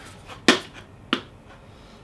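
Two sharp plastic knocks, about half a second apart, as two paintball hoppers' shells are handled and bumped together.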